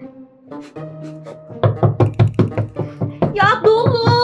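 A fist knocking rapidly on a closed interior door, about five knocks a second for a couple of seconds, starting about a second and a half in, over background music.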